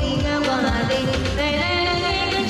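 A woman singing live into a handheld microphone over an amplified pop backing track with a steady drum beat.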